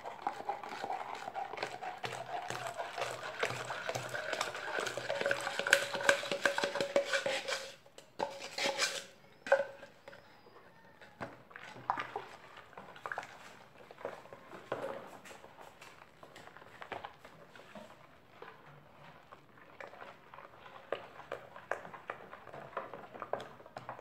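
Liquid poured from a plastic measuring jug into a plastic basin of foamy soap solution, stopping abruptly about seven and a half seconds in. Then a long-handled spoon stirs the mixture, with scattered light knocks against the basin.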